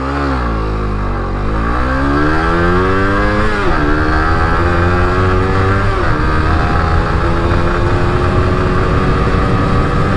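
Suzuki GSX-R150's single-cylinder engine accelerating hard from a standstill. Its pitch climbs, drops sharply at upshifts about four and six seconds in, then climbs slowly again.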